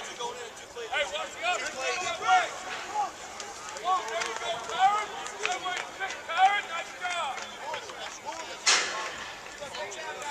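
Several voices of football players and coaches shouting and calling out at once across the field, overlapping, with a short sharp burst of noise near the end.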